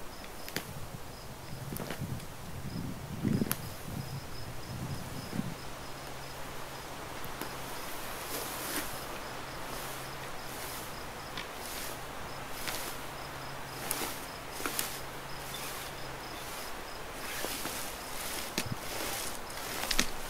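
Shrub roots cracking and snapping as a rope-and-pulley pull slowly tips the bush out of the ground: scattered single sharp cracks, with a louder rustle and creak of branches and roots in the first five seconds. An insect chirps steadily and high in the background.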